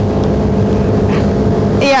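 Motorboat engine running at a steady pitch with the boat under way, a constant hum over wind and water noise. A voice says "yeah" near the end.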